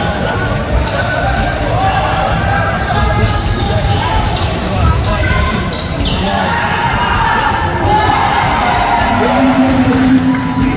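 Basketball being dribbled on a wooden court in a large gym, with the chatter of voices from the crowd throughout.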